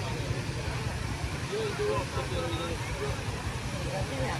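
A steady low rumble of outdoor ambience with faint voices of people talking at a distance.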